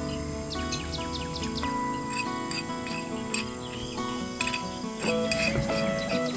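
Instrumental background music with held, changing notes, and high chirping sounds like crickets or birds laid over it. A few light clicks come in the second half.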